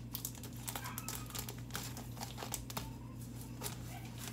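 A mailed package being opened by hand: its wrapping crinkling and crackling in quick, irregular bursts as it is handled and pulled open.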